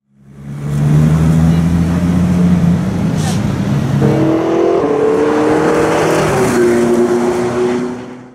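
Sports car engine running hard, with a low note for the first half that changes to a higher, slightly rising note about halfway through. It fades in at the start and fades out at the end.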